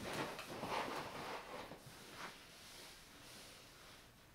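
Faint rustling and scuffing of hands smoothing a thin, flat rug on the floor, busiest in the first couple of seconds with a soft brush about two seconds in, then quieter.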